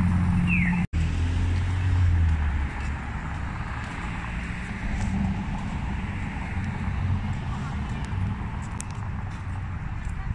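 City street traffic: a car's engine hums low as it turns through an intersection for the first couple of seconds. After a brief cut-out, steady street noise of passing traffic continues.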